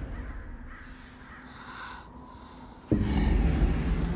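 Crows cawing over a quiet stretch of a film soundtrack, then a sudden loud, deep hit about three seconds in.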